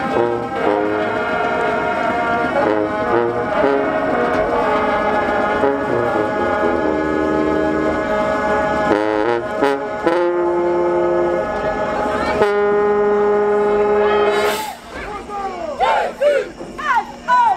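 Marching band brass section, sousaphones, trombones and trumpets, playing a slow chordal passage that ends on a long held chord cut off about a second and a half before the end. Voices then call out over the silence left behind.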